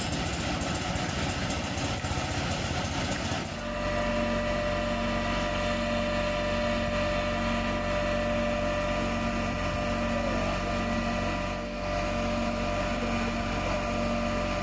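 Fire service aerial platform truck's engine running steadily at idle. It is rough and noisy for the first few seconds, then a steady hum with a softly pulsing low note from about three and a half seconds in.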